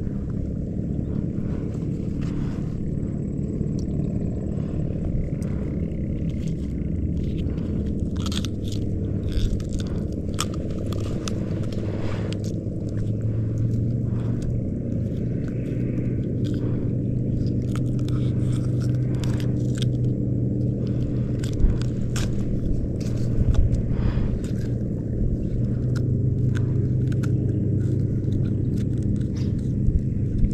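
A boat engine running with a steady low hum that grows a little stronger about halfway through, with scattered clicks and scrapes of gear being handled.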